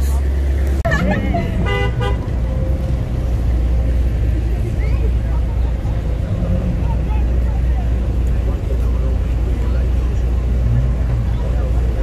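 A car horn gives a short toot about two seconds in, over a steady low rumble of car engines at a street car gathering.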